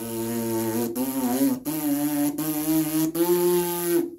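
A tuba player buzzing his bare lips without the mouthpiece: about five buzzed notes with brief breaks between them, stepping upward in pitch. This lip buzz is the vibration that makes the sound of a brass instrument.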